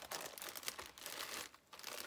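Clear plastic packaging bags crinkling as they are handled and lifted out of a box, with a brief lull about one and a half seconds in.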